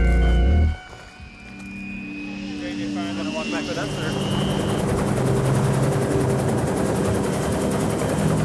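A helicopter's turbine and rotor growing steadily louder as it spools up for lift-off, with a slowly rising high whine and a fast, even blade chop. Bass-heavy music cuts off within the first second.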